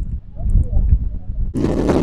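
Wind buffeting a phone's microphone, a heavy low rumble, then a stronger gust about a second and a half in that turns into a loud rushing blast.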